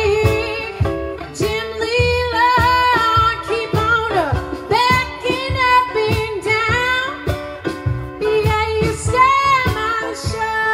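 Live blues band playing: a woman singing over acoustic guitar, electric bass and drums, with one note sliding down about four seconds in.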